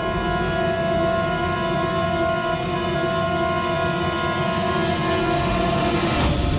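Suspenseful background score of long, held chords over a low rumble, swelling near the end.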